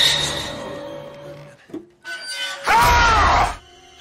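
Horror-film jump-scare stings, loud and abrupt. A sudden musical crash comes right at the start and dies away over about a second and a half. A second sudden burst about three seconds in carries a short cry that rises and falls in pitch.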